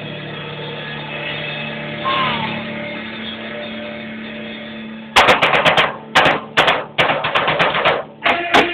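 A held chord from amplified instruments rings out and slowly fades. About five seconds in, a drum kit starts up with a run of quick, sharp hits.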